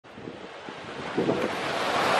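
Ocean surf breaking, with wind gusting on the microphone. The sound swells up from quiet over the two seconds.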